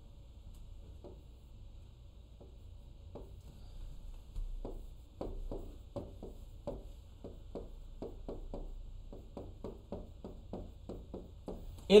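A pen tapping and stroking against a display screen while drawing circles, arrows and handwriting: a faint series of short taps, sparse at first, then about two to three a second from about four seconds in.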